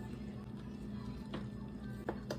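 An electric range's control knob being turned off, with a single faint click a little past halfway, over a steady low hum.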